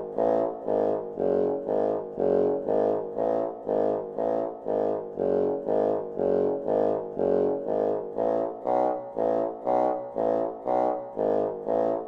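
Contemporary ensemble music: a low brass-like instrument plays a steady run of short repeated notes, about two a second, with the pitch shifting from note to note.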